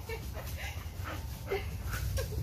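Five-month-old golden retriever puppy making a few short vocal sounds, each a brief call.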